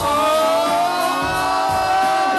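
A singer holds one long sung "oh" for almost two seconds over a hip hop backing track with a thumping beat, performed live.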